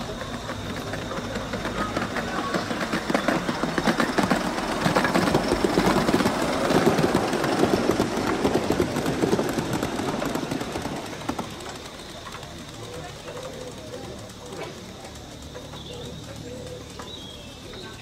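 Gauge 3 model train running on garden track, its wheels clattering rapidly over the rail joints. The clatter grows louder as the train approaches, is loudest for several seconds as it passes, then fades away after about eleven seconds.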